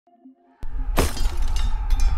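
Designed logo-intro sound effect: a deep rumble sets in about half a second in, a loud crashing hit lands about a second in, and further hits follow over the deep rumble.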